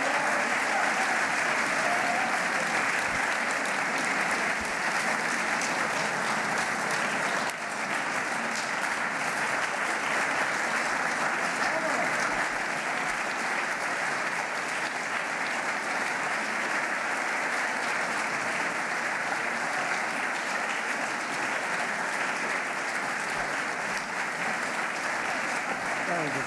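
An audience applauding steadily and without a break for the whole stretch.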